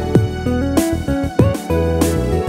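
Instrumental karaoke backing track at about 97 beats a minute: plucked guitar over bass and drums, with the sung melody left out.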